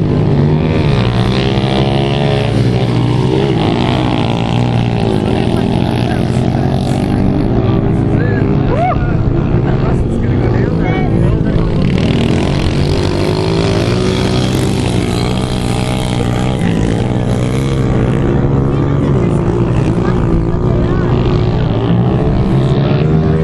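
Small pit bike engines running and revving as the bikes race, their pitch rising and falling with the throttle.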